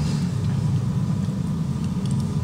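A steady low rumble of background noise with no voice, running evenly throughout.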